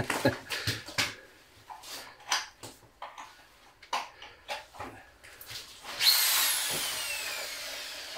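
Electric drill-driver starting suddenly about six seconds in and running on, its whine falling steadily in pitch. Before it, scattered light clicks and knocks.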